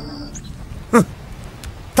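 A short cry about a second in that falls steeply in pitch from high to low, over a low steady hiss.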